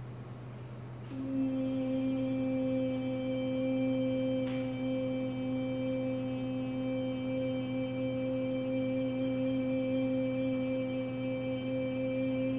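A woman's voice toning one long, steady held note for sound healing, rich in overtones, starting about a second in and holding without a break.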